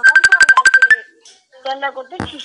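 Electronic phone tone: a rapid burst of about a dozen short, identical beeps in roughly one second, ending abruptly, followed by a person's voice.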